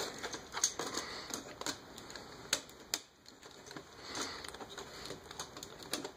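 Plastic parts of a small transforming robot figure being handled: scattered small clicks and knocks as a shoulder pad is worked along a tight slide joint and clicks into its lock positions, the sharpest click about two and a half seconds in.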